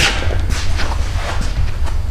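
Low rumble and light rustling from a handheld camera being moved and repositioned, the microphone picking up handling noise as the shot swings out.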